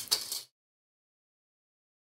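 A wire whisk clinks against a mixing bowl for about half a second, then the sound cuts off suddenly into complete silence.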